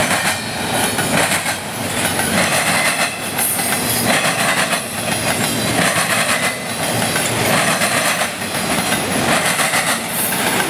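Double-stack intermodal well cars rolling past close by: a steady clatter of steel wheels on the rail, swelling every second or two as each set of wheels goes by.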